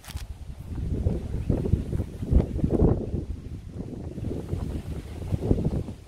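Wind buffeting the microphone: a gusty low rumble that rises and falls unevenly.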